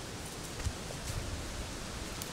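Steady hiss of wind and light rain, with rustling from the phone being moved about.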